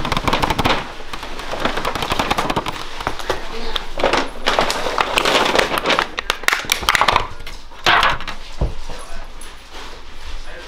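Thin clear plastic lid of a takeout sushi tray crackling and snapping in dense bursts as hands press it and pry it open.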